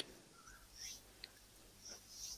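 Near silence: a couple of faint breathy sounds and one small click about a second in.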